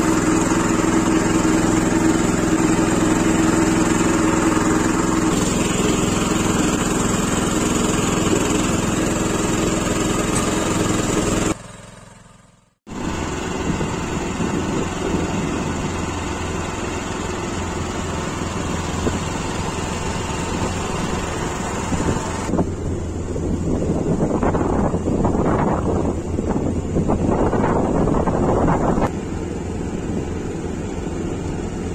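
MTZ Belarus walk-behind tractor engine running steadily under way. About twelve seconds in the sound cuts out briefly and comes back with a lower, rougher tone.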